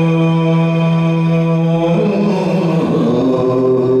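Yakshagana bhagavatike singing: a voice holds one long steady note, then slides and wavers through new pitches about two seconds in before settling on another held note.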